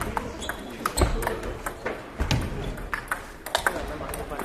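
Table tennis rally: a celluloid-type ping-pong ball struck back and forth, sharp irregular clicks of ball on paddles and table, echoing in a large gym hall. A couple of low thuds sound about a second and two seconds in.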